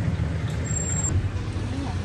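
Steady low rumble of background road traffic, with no distinct events.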